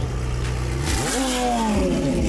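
McLaren supercar's twin-turbo V8 idling, blipped once about a second in, its pitch rising and falling back to idle.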